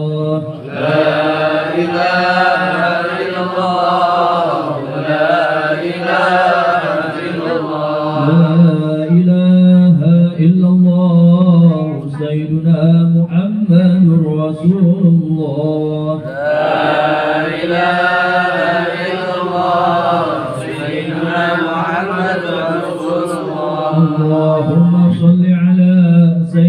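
A group of men chanting Islamic dhikr in unison through a microphone and loudspeaker, a lead voice carrying the melody. Two long rising-and-falling melodic phrases come about a second in and again about two-thirds through, with a steady held note between them.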